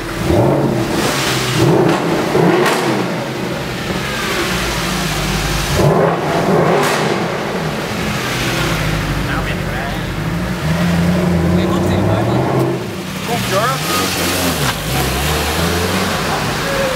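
Mercedes-Benz SLS AMG's 6.2-litre V8 revved again and again, pitch rising and falling with each throttle blip, echoing off the walls of a concrete tunnel.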